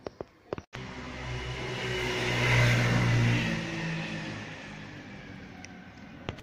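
A motor vehicle passing by: its engine and road noise swell to a peak midway and then fade away.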